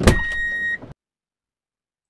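Short editing sound effect on a cut: a sudden hit carrying a steady high beep-like tone for under a second, then it cuts off into dead silence.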